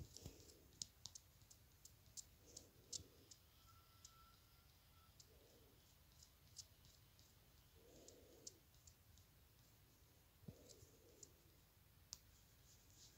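Faint, irregular clicking of a computer mouse during video editing, over near-silent room tone.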